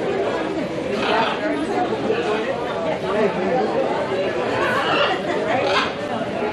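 Chatter of several people talking at once, with overlapping voices that no single word stands out from.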